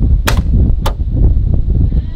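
Trunk lid of a 1979 Pontiac Bonneville Brougham being unlatched and opened: two sharp clicks about half a second apart, over a loud low rumble.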